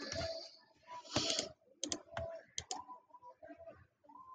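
Computer mouse clicking: a few sharp clicks, some in quick pairs, around the middle, with short bursts of rustling noise at the start and, loudest, about a second in.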